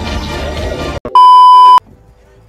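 Music stops abruptly about a second in, followed by a single loud, steady electronic beep at one pitch, lasting a little over half a second and cutting off sharply.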